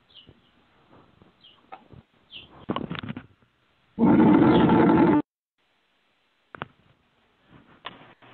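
Noise from an open line on a phone-bandwidth conference call: faint scattered clicks and rustles, then about four seconds in a loud, harsh burst that lasts a little over a second and cuts off suddenly.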